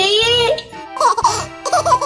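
Children's background music with a steady beat. A child's voice trails off in the first half second, then short, high, baby-like babbles follow from an interactive baby doll.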